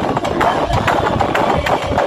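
Live band percussion playing loudly, a dense, noisy drumming passage with repeated low drum beats and no clear melody or singing, picked up by a phone microphone.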